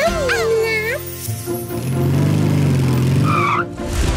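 A brief wavering vocal over music, then a cartoon vehicle sound effect: a bus engine humming steadily for about two seconds, with a short wavering squeal near the end as it pulls in and stops.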